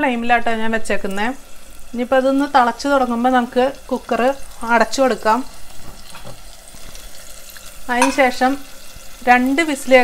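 A woman speaking over the faint sizzle of sardine curry cooking in an open pressure cooker on a gas burner. The talk pauses briefly about six seconds in.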